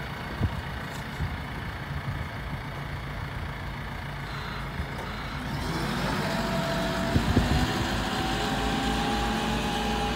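JCB 6T-1 site dumper's diesel engine idling, then pulling away a little over halfway through: the engine note grows louder and a whine rises slowly in pitch as the machine drives off. A few short clunks sound during the pull-away.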